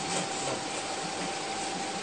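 Steady background hiss with a faint constant high tone running through it.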